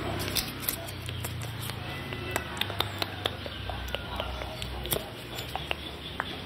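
Soft makeup brush and gloved hand moving close to the microphone. It is a soft brushing and handling sound with many scattered small ticks and crackles over a steady low hum.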